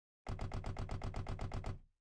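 Rapid, even mechanical clatter, about eight strokes a second, starting suddenly and fading out after about a second and a half.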